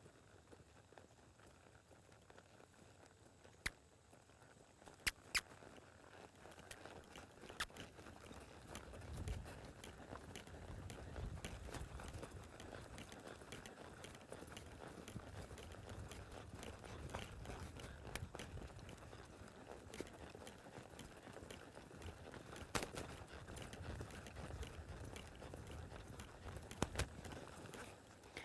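Faint, dull hoofbeats of a horse trotting and loping on a soft sand arena, coming in about six seconds in. Before that it is near silent apart from a few sharp clicks.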